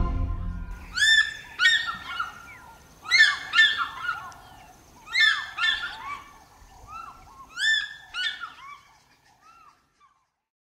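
African fish eagle calls: about four bursts of two or three yelping notes each, roughly two seconds apart, the last ones fainter. A music track fades out in the first second.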